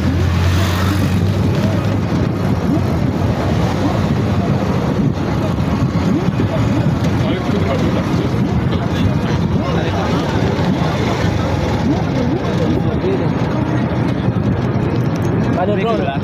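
Steady engine and road noise of a moving motor vehicle, with indistinct voices mixed in.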